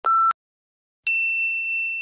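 Countdown timer's last short electronic beep, then about a second later a single bright ding that rings on and slowly fades as the timer hits zero: the end-of-countdown alarm.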